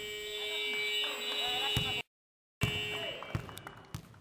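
Sports-hall scoreboard buzzer sounding a long, steady electronic tone over shouting voices, sounding the end of the period after a last-second shot. It cuts off suddenly about two seconds in; after a short gap, its tail and the voices come back and fade.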